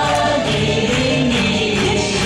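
Music with a group of voices singing together over accompaniment and a steady beat.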